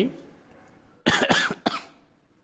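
A person coughing three times in quick succession, about a second in.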